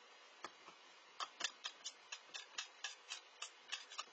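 Stir stick clicking against the wall of a small cup of epoxy resin as it is stirred briskly, about four clicks a second from about a second in. The resin is being stirred hard on purpose to work air bubbles into it.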